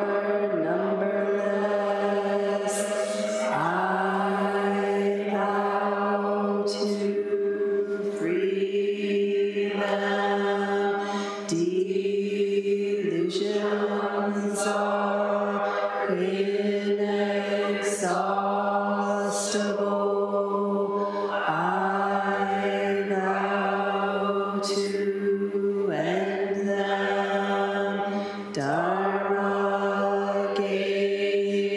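Voices chanting a Buddhist chant in unison on one steady, near-monotone pitch, in phrases of about two to three seconds with short breaks for breath between them.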